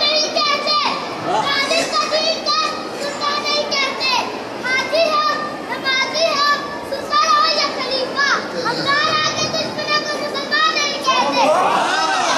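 A high-pitched voice reciting in short, rising and falling phrases. Near the end a crowd breaks in, shouting together.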